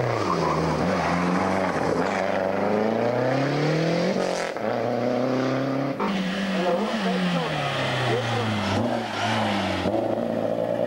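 Rally car engines at full throttle through a corner. The pitch climbs as a car accelerates hard, then falls as it lifts and brakes. The sound changes abruptly about six seconds in, and a second car revs up and then down the same way.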